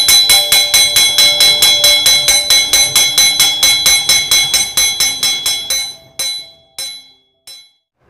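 Hanging iron-ring school bell struck rapidly, about five clangs a second, each ringing on. Near the end the strikes thin out to a few last ones and stop.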